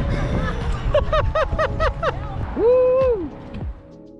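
Wind buffeting the microphone while riding an electric bike, with a voice letting out a quick run of short rising-and-falling notes and then one longer whoop. Background music runs underneath, and the wind noise fades out near the end.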